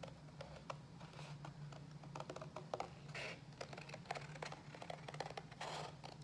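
Scissors cutting through watercolor paper: a run of small, irregular snipping clicks as the blades work along a curved line, with a brief paper rustle about three seconds in.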